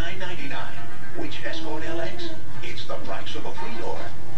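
A television playing: voices over music, coming through the TV's speaker.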